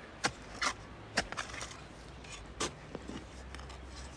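A spade digging into garden soil beside an oak tree, giving a few short, sharp chops and scrapes at uneven intervals, the clearest about a second in and again near three seconds, over a low steady hum.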